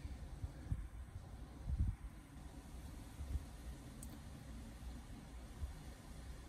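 Quiet background: a faint low rumble with a couple of soft low thumps in the first two seconds.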